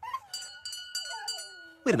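A bell rings with a steady, held tone while dogs whine in wavering whines that fall in pitch. A man's voice begins near the end.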